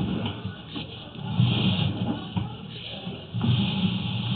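Sewer inspection camera's push cable being pulled back out of the line, rasping and rumbling in swells about every two seconds.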